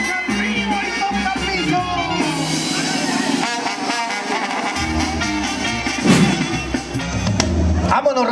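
Mexican banda music with brass playing, including trumpets, trombone and tuba.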